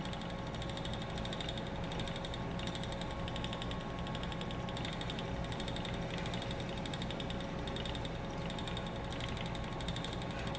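Ashford Elizabeth 2 spinning wheel running steadily under treadling: an even whir of the drive wheel and flyer with fast, light ticking.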